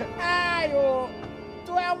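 A cat's meow: one drawn-out call that slides down in pitch at its end, over background music. A woman's voice starts speaking near the end.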